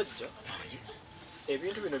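Crickets trilling steadily, a continuous high-pitched note under the voices.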